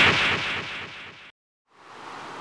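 A loud boom-like hit at the very start, dying away over about a second, then cut off into a moment of dead silence before faint outdoor ambience returns near the end.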